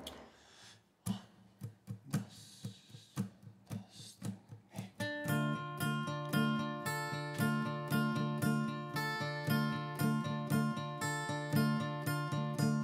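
Two steel-string acoustic guitars opening a song. There are a few separate, sparse strums from about a second in, then steady rhythmic chord strumming from about five seconds in.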